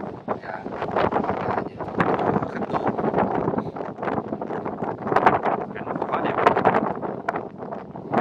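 Wind buffeting the microphone in uneven gusts, with a person's voice talking indistinctly underneath it.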